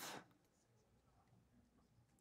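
Near silence: faint room tone, after a spoken word trails off right at the start.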